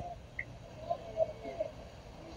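Faint, garbled voice of a remote caller coming through a poor call connection, too quiet to make out, over low line hiss.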